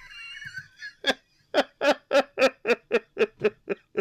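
A man laughing hard: a run of about a dozen short bursts of laughter, starting about a second in and coming faster, about four a second, toward the end.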